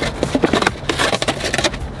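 Paper takeout bag rustling and crinkling as a cardboard pizza box is slid out of it, a dense run of crackles.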